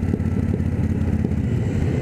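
Cruiser motorcycle's engine running steadily while the bike is ridden at road speed, with a low, even rumble under steady wind and road noise.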